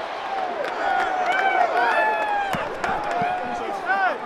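Several men shouting and whooping in celebration over stadium crowd noise, their drawn-out yells overlapping, with a few sharp smacks about two and a half seconds in.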